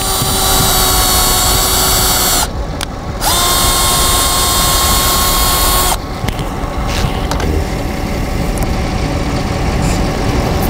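Cordless drill boring into the tread of a run-flat car tyre, running in two bursts of a steady whine, each about two and a half seconds long with a short pause between. The drill stops about six seconds in, leaving a softer, even noise.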